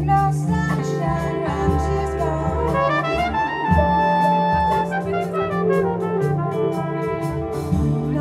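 Live jazz band playing: trumpet carrying the melody, holding one long note near the middle, over electric bass, keyboard and drums with evenly spaced cymbal strokes.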